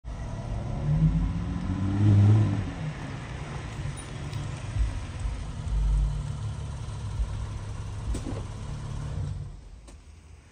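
A Lexus IS sedan's engine revving up briefly, loudest about two seconds in, then running at a steady low idle with a couple of low thumps, fading out just before the end.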